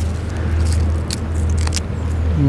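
A few short crisp crunches of a wild garlic leaf being chewed, over a steady low rumble.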